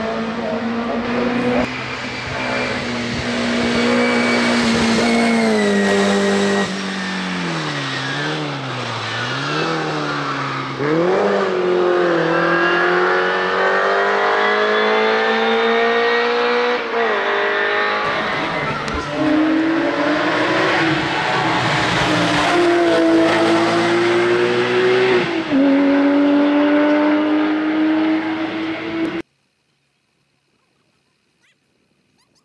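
Hill-climb race car engines revving hard, the pitch climbing through each gear and dropping at every shift. About eight to ten seconds in, the pitch dips and rises quickly as the car brakes and changes down. The sound cuts off suddenly about a second before the end.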